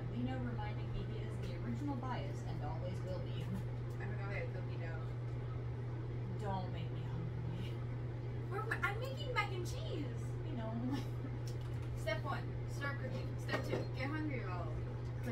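Quiet, indistinct talking over a steady low hum, with a few light clicks and knocks in the second half.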